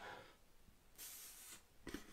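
Near silence: room tone, with a faint breath through the nose about a second in and a small click near the end.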